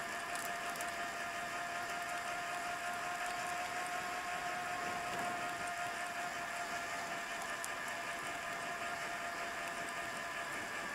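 Mountain bike rolling along a paved trail: a steady whirring hum with several held tones over a hiss.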